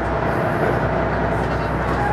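Diesel railcar running, heard from inside the passenger cabin: a steady engine drone under continuous rail and running noise.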